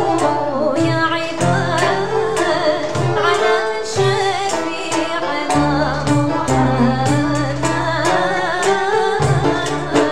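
Traditional ensemble music played live on oud, upright-held violins, banjo and frame drum, over a steady drum beat, with a woman singing.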